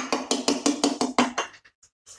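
Cider glugging out of a tipped can into a glass in quick, even glugs, about seven a second, tailing off about a second and a half in.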